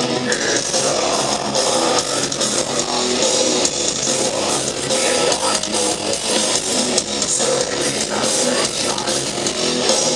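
A heavy metal band playing live, with distorted electric guitars and drums in a dense, unbroken wall of sound, heard from the crowd.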